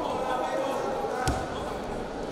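Indistinct voices and calls echoing around a wrestling hall, with one sharp thud a little past the middle as the wrestlers grapple on the mat.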